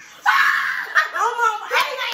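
A person's high-pitched excited scream starting about a quarter second in and held for over half a second, running into laughing and excited voices.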